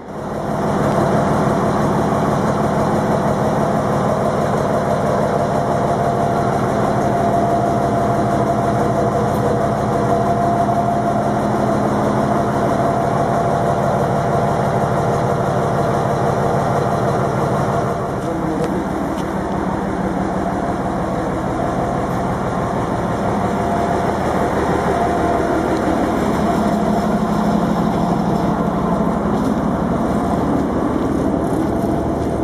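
Diesel rail vehicle engine running steadily, heard from inside the driver's cab. About two-thirds of the way through its note drops slightly and it gets a little quieter.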